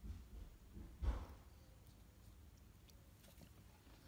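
Faint handling noise from hands working on a small painted miniature: low soft thumps, the loudest about a second in, and a few faint light ticks after it.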